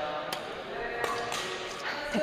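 Badminton rackets striking a shuttlecock: two sharp pops about a second apart, over faint background voices in the hall.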